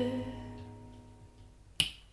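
A song played back through DIY mini-monitor loudspeakers with Dayton DSA135 aluminium-cone woofers, heard in the room: held low notes fade away at the end of a sung line, and a single sharp click comes near the end.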